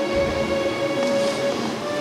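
Symphony orchestra holding one long steady note in an opera scene.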